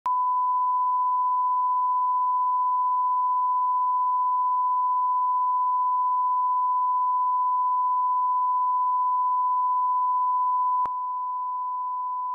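Steady pure line-up test tone of the kind that goes with colour bars, one unbroken beep. It steps a little quieter with a faint click near the end.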